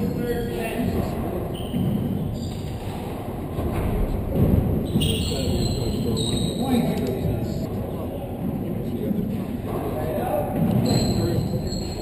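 Handball striking the walls and floor of an enclosed court during a rally, with indistinct voices and a hall echo.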